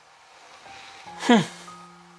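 Quiet background music with a few long held notes, and a man's short 'hmm' a little over a second in.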